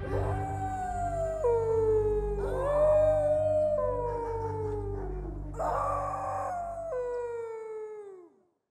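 Dogs howling: several long, overlapping howls, each holding a pitch, then dropping and sliding down, with new howls starting about every two and a half seconds and fading out at the end. A low steady drone sits beneath them.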